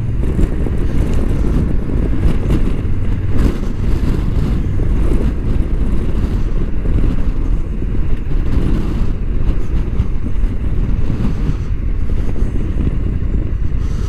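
Honda NT1100 motorcycle's parallel-twin engine running as the bike rides along at low road speed, with steady wind rumble on the microphone. The bike slows almost to a stop near the end.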